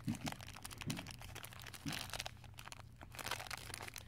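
Small clear plastic bag crinkling as fingers handle it and the plastic mount inside, with quick irregular clicks and taps of long fingernails and hard plastic against the bag.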